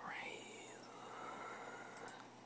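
Faint whispering close to the microphone. It is strongest in the first second and fades toward the end.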